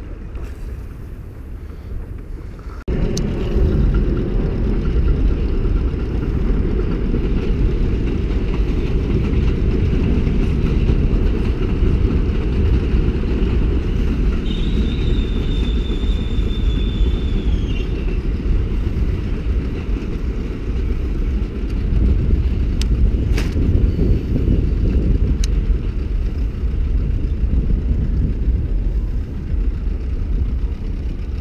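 A steady low rumble that starts abruptly about three seconds in. A thin, high whistle lasts a few seconds in the middle, and a few faint clicks come later.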